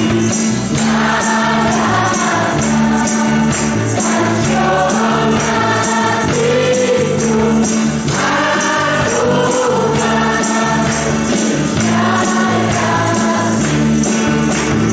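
Church worship band playing a Khasi gospel song: several voices singing together over electric guitar, bass guitar and a shaken tambourine, with a steady beat.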